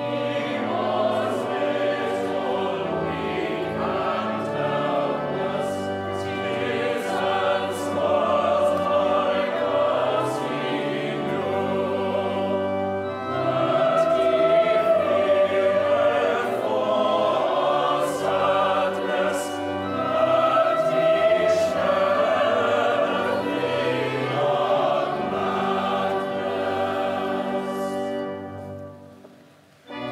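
Church choir of children and young voices singing, accompanied by pipe organ with sustained low notes; the music dies away at the very end.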